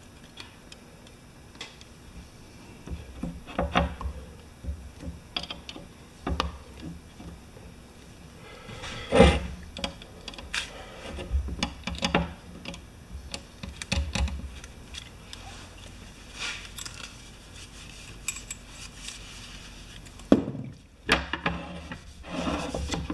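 Irregular metallic clinks and light knocks of pressure-washer plunger pump parts being handled and fitted together on a workbench, the loudest knock about nine seconds in.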